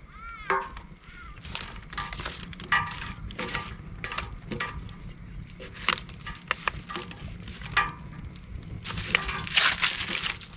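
Burning wood and hot coals in a steel fire pit being pushed around and spread with wooden sticks: irregular clacks, scrapes and crackles throughout.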